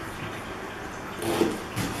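Kitchen knife cutting through an onion onto a plastic cutting board, with a couple of short knocks in the second half over quiet room sound.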